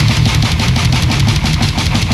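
Instrumental heavy metal: distorted guitars chugging low over fast, even drumming.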